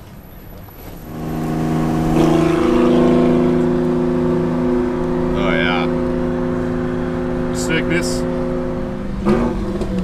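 A car engine running at a steady speed, a constant low drone that sets in about a second in and stops shortly before the end.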